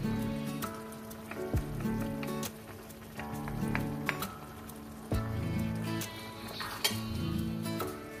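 Background music with slow held chords, with a few sharp clicks of a metal spoon against the frying pan as sauce is stirred.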